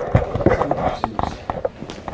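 Hard-soled shoes striking a tiled floor in an irregular run of footsteps, over low background chatter.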